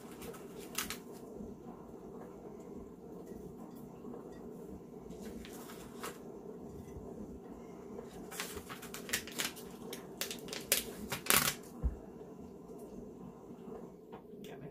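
Snowflake stickers being peeled off their plastic backing sheet and pressed onto a glass bottle: intermittent crinkling rustles and small clicks, coming thickest in a cluster about two-thirds of the way in, over a faint steady hum.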